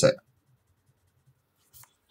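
Faint paper-and-pencil handling: a coloured pencil and a postcard on a paper sheet, with one brief scratch near the end.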